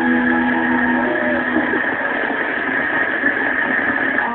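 Studio audience applauding steadily, with the tail of the show's music fading out in the first second and a half.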